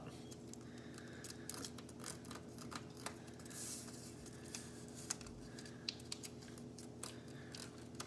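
Origami paper being handled and creased while the turtle's shell is rounded: faint rustling with scattered sharp little crackles as folds are pressed, and one longer papery hiss about halfway through.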